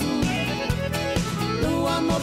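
Sertanejo song, a moda de viola: a man singing into a microphone over country-style band accompaniment with a steady beat of about two strokes a second.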